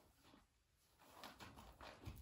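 Near silence: room tone, with a few faint short rustles in the second half.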